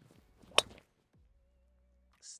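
Golf tee shot with a driver: a brief swish of the downswing, then one sharp crack as the clubhead strikes the ball about half a second in, ringing off briefly.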